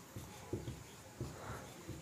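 Faint marker pen writing on a whiteboard: light, irregular taps and scratches of the tip as letters are formed.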